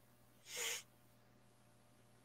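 A single short, breathy sound from a person at the microphone, about half a second in, with near silence around it.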